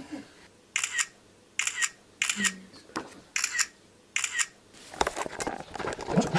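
Camera shutter clicking five times, each shot a quick double click, at roughly one shot a second. It ends with scuffing handling noise.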